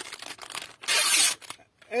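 Plastic cold-cut packet crinkling as it is handled, then ripped open with a loud tear lasting about half a second, around a second in.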